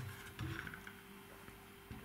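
Faint handling noise from a hand moving the plastic top cap of a Goal Zero Lighthouse 400 LED lantern, a brief soft rattle about half a second in, over a faint steady hum.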